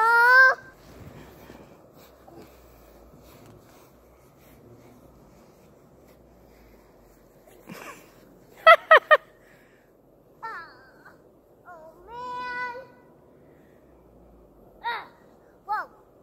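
A toddler's wordless vocal sounds between quiet stretches: a short high call at the start, three quick yelps about nine seconds in, a held 'aah' near twelve seconds, and two short calls near the end.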